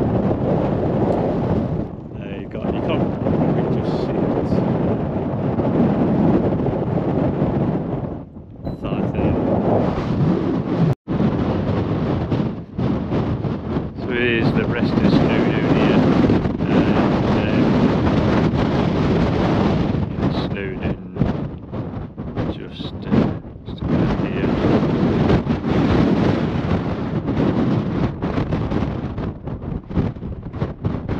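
Strong wind buffeting the camera microphone in loud, gusty, rumbling surges on an exposed mountain summit, with a momentary dropout about eleven seconds in.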